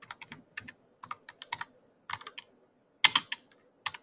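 Typing on a computer keyboard: quick runs of keystrokes in about five short bursts, with brief pauses between them.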